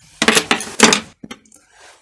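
Small metal hardware, screws and washers, clinking and rattling as it is handled, in two short bursts in the first second, then a faint click.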